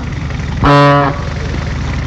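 Motorcycle engines running steadily with an even low pulse. A single flat horn blast sounds a little under a second in and lasts about half a second.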